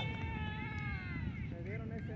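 A long, drawn-out shout held for about a second and a half and sliding slightly down in pitch, followed near the end by a shorter shout, over steady wind noise on the microphone.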